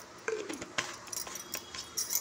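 A few light metallic clinks and taps of steel kitchen containers and utensils being handled.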